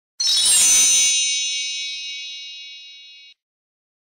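Logo sting sound effect: one bright metallic ding with a brief swish at the onset, its high ringing fading over about three seconds before cutting off abruptly.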